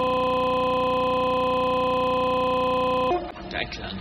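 A split-second of a man's scream looped over and over into a loud, steady buzzing drone, a YouTube Poop stutter effect, which cuts off abruptly about three seconds in. A man's voice follows.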